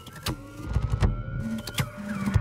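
Electronic whirring sound effect, like a small motor, with a thin whine rising slowly in pitch and a couple of sharp clicks.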